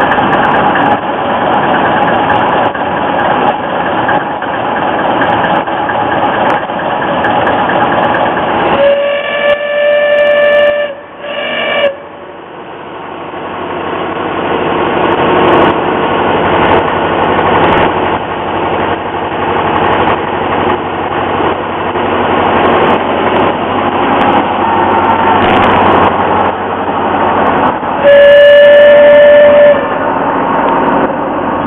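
A Kö I small diesel shunting locomotive running, its engine growing louder over the middle stretch. Its horn blows three times: a blast about 9 seconds in, a short one just after, and the loudest, about two seconds long, near the end.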